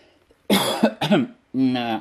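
A man coughs once, sharply, about half a second in, then makes short voiced throat sounds and a held hesitation sound before speaking again.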